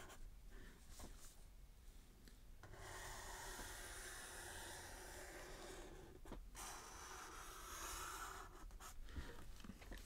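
Faint scratching of a Sharpie marker drawn in long strokes across sketchbook paper, in two long strokes, the first starting about a quarter of the way in.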